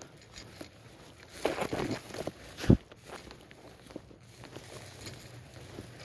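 Footsteps through tall dry grass, the stems brushing and crackling, with one sharp thump about two and a half seconds in.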